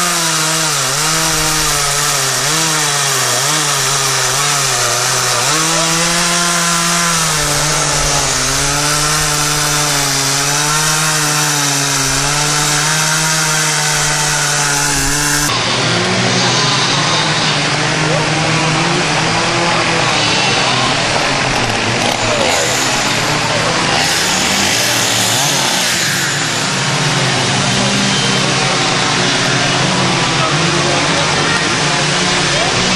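A two-stroke chainsaw running and cutting wood, its pitch rising and falling again and again with the throttle. About halfway through, the sound changes abruptly to a busier outdoor mix with people's voices.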